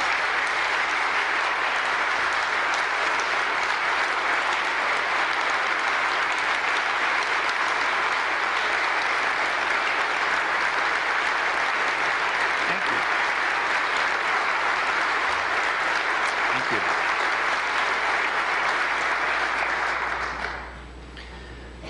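Large audience applauding, a long standing ovation of dense, steady clapping that holds an even level throughout.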